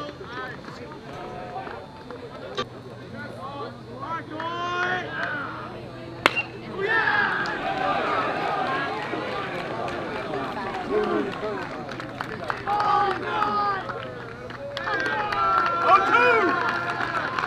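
Crowd and players shouting and cheering at a baseball game. About six seconds in, a bat strikes the ball with a sharp crack, and the yelling then grows louder as the batter runs.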